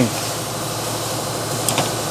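Steady workshop background hum, with one light click near the end as tools are shifted in a toolbox.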